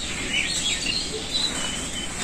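Small birds chirping in short high calls, several times, over a steady high-pitched insect hiss.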